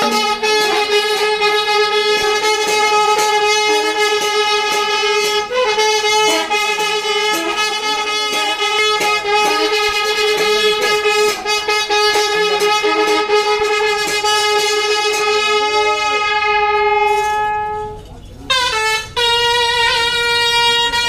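A wind instrument holds one long, steady note over many short percussive clicks. Near the end the note breaks off and comes back a little higher.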